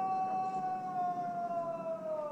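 A single long held pitched tone with overtones, steady and even in pitch, beginning to sag downward just at the end.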